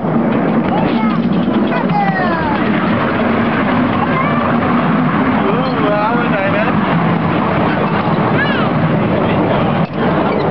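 Miniature ride-on railway train running through a tunnel, a steady rumble of wheels and engine, with voices calling out over it in long sliding, rising and falling whoops.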